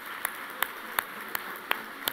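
Applause in a banquet hall, with one person's hand claps close to the microphone standing out, about three a second, over fainter clapping from the room.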